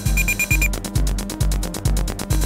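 Homemade synthesizer playing an electronic pattern: a low kick thump about twice a second, with a quick run of about five short high beeps near the start, followed by fast ticking.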